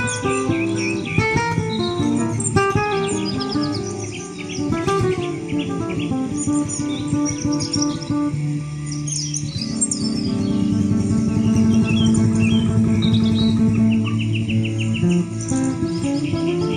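Acoustic guitar played as a slow improvisation of picked notes and chords, over a field recording of birdsong. Birds chirp throughout, with a rapid trill near the end.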